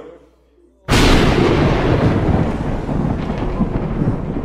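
A thunderstorm sound effect over a theatre PA: a sudden loud crack of thunder about a second in, then a continuing loud, deep storm noise.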